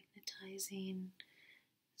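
Only speech: a woman murmuring softly, with a short held hum-like sound in the first second.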